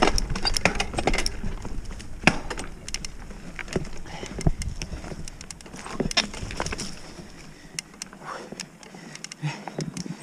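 Oggi Cattura Pro mountain bike ridden over a rough dirt singletrack: irregular clicks and rattles from the bike's parts over the bumps, above tyre and wind rumble that drops away about three quarters through.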